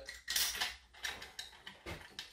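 Light clinking and rattling of a line-voltage baseboard-heater thermostat and its stiff wires being handled and pushed toward a wall box, in irregular bursts with a sharp click near the end.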